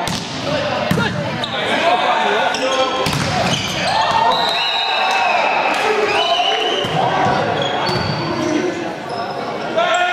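Volleyball rally in a gym: players and spectators shouting and calling out, with several sharp volleyball hits. Short high squeaks of sneakers on the hardwood court come through in the middle of the rally.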